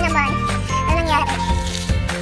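Background music: a pop song with a steady bass line and a sung vocal line.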